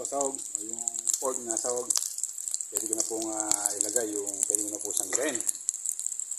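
Diced pork frying in its own rendered fat in an electric grill pan: a steady sizzle with small popping crackles, under a person talking.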